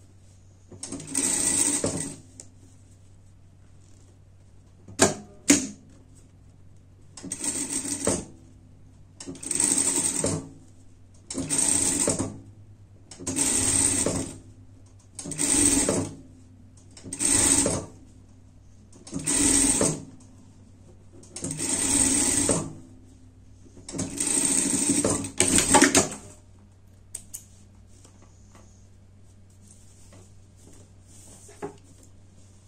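Industrial sewing machine stitching a hem in about ten short bursts, each a second or two long, with brief stops between them as the fabric is guided along. A low steady hum runs between the bursts. Two sharp clicks come about five seconds in, and the stitching stops a few seconds before the end.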